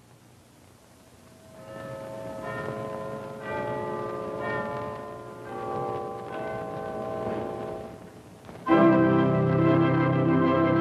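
Film score music: after a quiet start, a slow melody of held notes comes in, and near the end a full orchestra with brass enters loudly.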